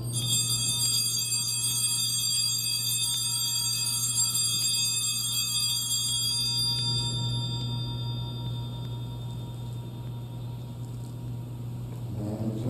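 Altar bells (a cluster of small sanctus bells) rung at the elevation of the host: a run of repeated shakes over the first seven seconds or so, each renewing a bright high ringing that then fades out. A low steady hum runs underneath.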